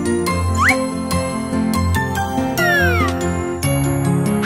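Children's cartoon background music with tinkling notes, overlaid with sliding sound effects: a quick rising swoop just before a second in and a cluster of falling swoops about three seconds in.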